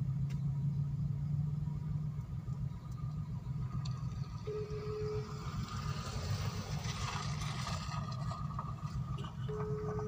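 A car's engine idling steadily, heard from inside the cabin while the car waits at a junction, with a motorcycle's engine drawing nearer in the second half. Two short beeps sound about five seconds apart.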